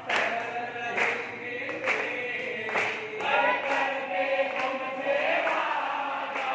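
Several voices singing together, with a sharp struck beat about once a second.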